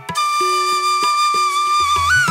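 Background music: a flute-like melody holding one long note over light percussion taps, with the deep drum beat dropping out.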